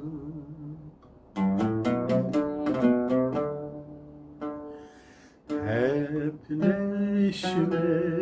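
Oud plucked with a plectrum in an Acemaşiran melody: a quick run of notes that rings away. A man's voice comes back in singing about two-thirds of the way through, with the oud accompanying.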